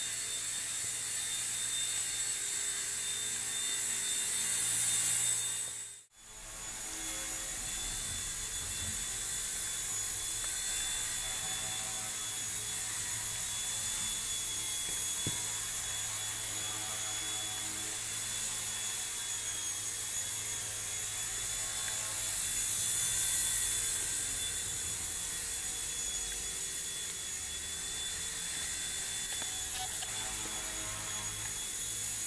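Walkera Genius CP V2 micro collective-pitch RC helicopter in flight: a steady high-pitched whine of its motor and spinning rotor, louder about five seconds in and again about twenty-three seconds in. The sound cuts out for a moment about six seconds in.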